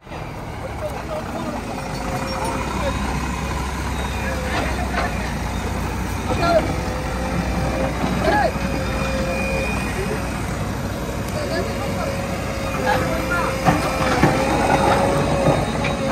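Heavy diesel engines of a loaded Ashok Leyland tipper truck and a JCB 3DX backhoe loader running steadily, a low rumble with a steady whine over it, while voices talk in the background.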